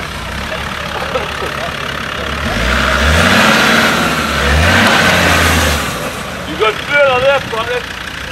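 Land Rover Discovery Series II engine revving hard as the 4x4 drives past close by off-road: the engine note climbs from about two and a half seconds in, dips, climbs again, and drops away a little before six seconds, with a loud rush of noise alongside it. A shout of voices follows near the end.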